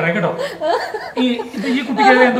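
People talking, with chuckling laughter mixed in.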